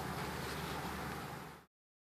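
Steady, even background hiss of outdoor ambience with no distinct event, cutting off abruptly to dead silence about one and a half seconds in.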